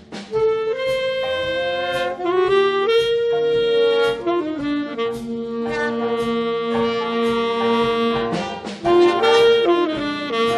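Jazz big band of saxophones and brass playing long held chords together, the harmony shifting every second or two over the rhythm section. The full band comes in loud just after the start, and a brief break with a few drum strikes leads into a loud chord about nine seconds in.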